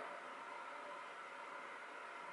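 Faint steady hiss of room tone, with no distinct sound standing out of it.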